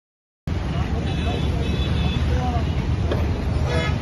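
Street traffic noise with a heavy low rumble, starting abruptly about half a second in after a silent gap, with faint voices and brief high horn toots over it.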